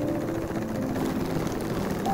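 Electric sewing machine (NCC) running steadily, stitching through thick layered canvas, over faint background music.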